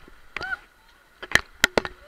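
A short pitched squeak that rises and falls, then three sharp knocks close to the microphone in the second half.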